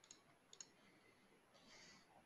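Near silence with a few faint computer-mouse clicks: one just after the start and two close together about half a second in.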